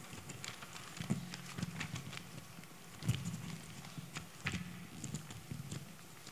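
Pages of a Bible being leafed through close to a handheld microphone: faint, irregular soft taps and paper rustles.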